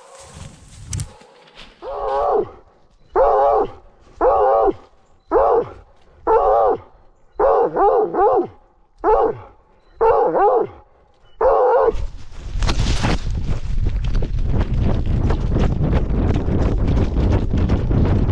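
Blood-tracking dog baying at a wounded buck: about ten loud bays, roughly one a second. About twelve seconds in the bays stop and a loud, continuous crashing of brush and dry leaves takes over as the dog runs through the undergrowth.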